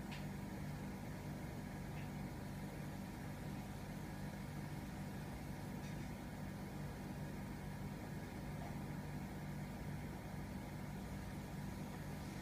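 A steady low mechanical hum under a faint even hiss, with a few tiny clicks.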